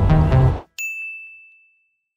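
Upbeat electronic music with a bass line that cuts off suddenly about half a second in, followed by a single bright ding that rings and fades away over about a second.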